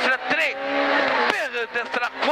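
Peugeot 106 A5 rally car's engine heard from inside the cabin, held at steady high revs for about a second, under the co-driver's pace-note calls at the start and end.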